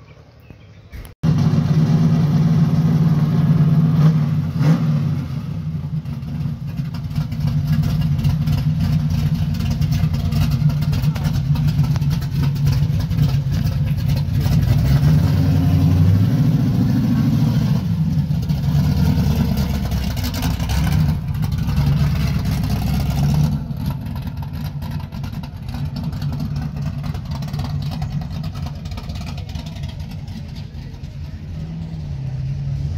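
A car engine running, cutting in suddenly about a second in and carrying on steadily, with a brief rise in pitch past the middle and somewhat quieter from about three-quarters of the way through.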